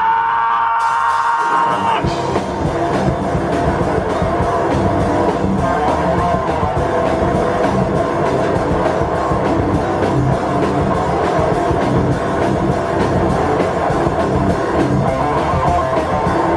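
Live rock band playing: a held guitar chord rings for the first two seconds, then the drums and full band come in together and play on at a steady, driving pace.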